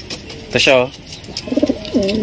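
Domestic racing pigeon giving a short, low coo near the end.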